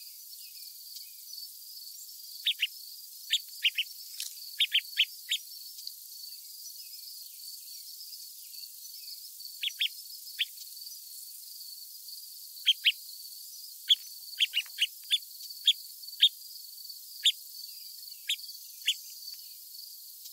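Small songbirds giving short, sharp chip calls in loose clusters, about two dozen in all, each note dropping quickly in pitch. Under them runs a steady, high hiss.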